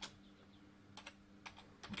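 Computer keyboard being typed on: a handful of faint, quick keystrokes in the second half.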